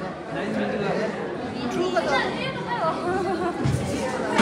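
Chatter of several people talking over one another, with some higher voices in the middle.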